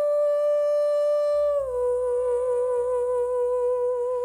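A female singer holding one long sustained note, steady at first, then stepping down a little about one and a half seconds in and held there with a light vibrato. A soft low accompaniment comes in under the voice about a second in.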